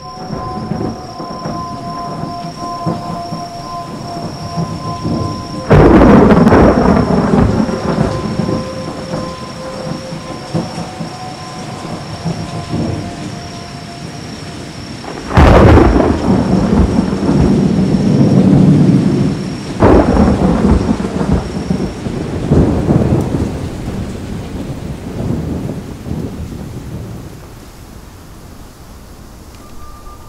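Thunder in a designed film soundtrack: three loud claps, about six, fifteen and twenty seconds in, each rolling away slowly over a steady wash of rain. A held musical drone of a few steady tones runs under it and drops out through the first half.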